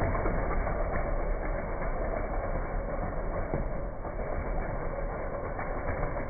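Air escaping through the stretched neck of an inflated latex party balloon, a continuous buzzy rasp that slowly weakens as the balloon deflates.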